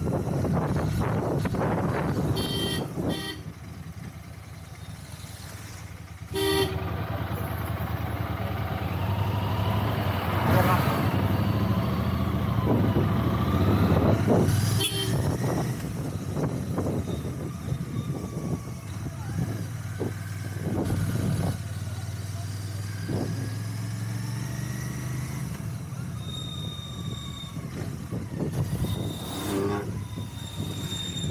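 Royal Enfield Continental GT 650's parallel-twin engine running at low speed in traffic, dropping quieter about three seconds in and picking up again a few seconds later. Vehicle horns sound, including a couple of short toots near the end.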